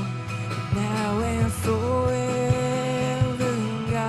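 Worship song in full: a melody held on a long note over a band, with a kick drum beating under it.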